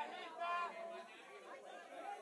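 Quiet voices talking, with no other sound standing out.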